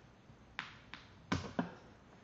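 Four small clicks of an M4 screw, washer and bearing knocking together as they are fitted by hand, the loudest a little past halfway.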